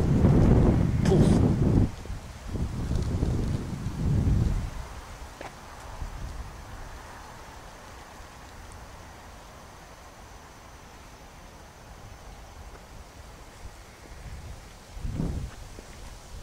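Wind buffeting the camera microphone in loud, low rumbling gusts for the first four or five seconds, then dropping to a faint steady outdoor hush, with one short gust near the end.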